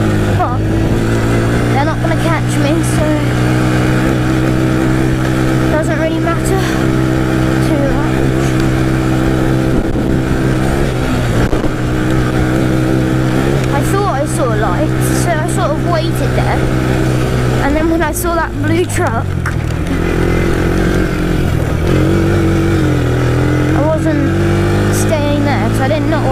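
Yamaha Raptor 700R quad's engine running steadily at riding speed. The revs drop briefly about eighteen seconds in and build again a few seconds later.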